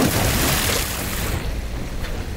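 Rushing water noise in a swimming pool, with a sharp click right at the start; the noise eases off about a second and a half in.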